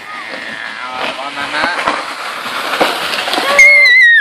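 Sleigh shovel (pelle traîneau) scraping over snow and ice on wooden deck boards as it is pulled, the scraping growing louder with short knocks. Near the end a child gives a loud, high, held squeal.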